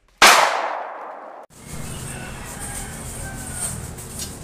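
A sudden loud clanging impact sound effect that rings away over about a second and is cut off abruptly, followed by steady outdoor background noise.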